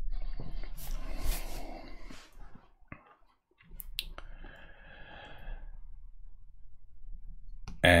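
Quiet, wordless vocal sounds from a man, with a sharp click about four seconds in.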